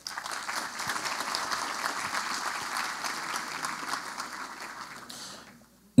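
Audience applauding, a dense patter of many hands clapping that dies away about five seconds in.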